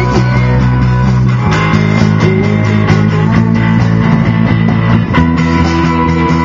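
Live punk rock band playing loud: electric guitar and drums with cymbal hits, the chords changing about a second and a half in and again near the end.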